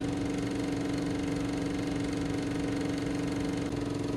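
Film projector running: a steady mechanical whirr with a fast, even rattle and a constant hum.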